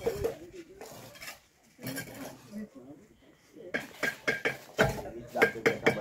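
Hollow ceramic bricks and masonry tools clinking and knocking as bricks are handled and laid. It is quiet at first, then a quick run of sharp strikes fills the second half.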